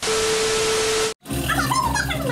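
Television static hiss with a steady beep tone, a glitch sound effect that cuts off suddenly after about a second. It is followed by a short wavering, voice-like sound over a low hum.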